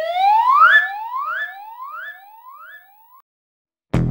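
A siren-like whoop sound effect: a rising sweep in pitch repeated about five times, each fainter than the last, as if echoing away, and gone about three seconds in.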